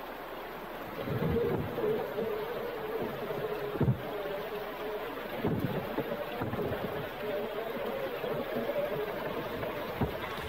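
Axial SCX6 Honcho RC crawler driving through a shallow rocky creek: its electric motor and geared drivetrain whine, wavering in pitch with the throttle, over the wash of water around the tires. A sharp knock about four seconds in, with a few duller ones, as the tires climb over rocks.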